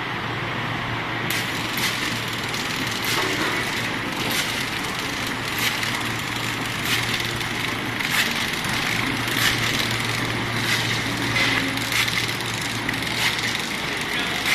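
Ice lolly (popsicle) making machine running: a steady low hum under a hiss, with a sharp click repeating about every 1.25 seconds.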